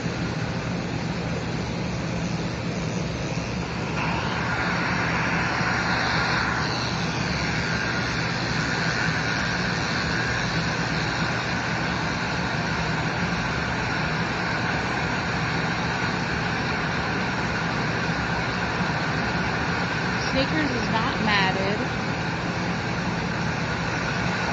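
Electric dog grooming clippers with a number 7 blade running steadily with a low hum while shaving a shih tzu's coat; a brighter buzz joins about four seconds in.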